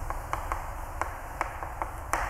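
Chalk tapping and scratching on a blackboard as words are written: a string of short, irregular clicks.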